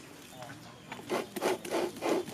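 Hands rubbing and scraping over a perforated cracker-mould plate on a stone block, in a run of quick strokes about three a second that begins about halfway.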